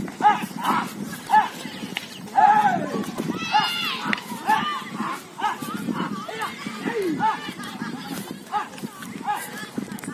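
Men's short, repeated shouted calls urging on a yoked pair of running bulls dragging a plank sled, with faint hoofbeats on the dirt track beneath.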